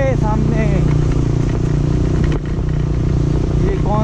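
Motorcycle engine running steadily while riding, with a slight drop in level a little past halfway.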